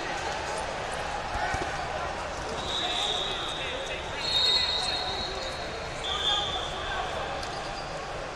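Three long, high referee whistle blasts, each about a second, from the other mats, over the steady chatter of a crowd in a large hall.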